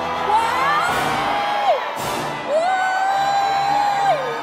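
A woman's long, high 'ooh' cry of surprise, held and dropping in pitch at the end, twice, over background music. A sharp hit sounds between the two cries.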